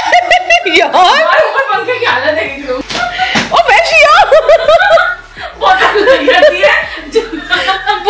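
Excited shrieking, shouting and laughing voices, with repeated sharp slaps and smacks as people scuffle at close quarters. There is a short lull about five seconds in.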